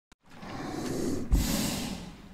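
Heavy breathing: a long, swelling breath, a brief pause, then a louder breath with a low thump about a second and a half in.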